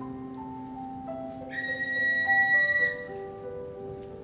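Digital piano playing slow, sustained notes, with a high whistle-like tone held for about a second and a half in the middle, louder than the keys.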